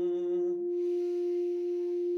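A low toned vocal note held over a steady drone tone; the voice breaks off about half a second in and gives way to a long breath, while the drone holds.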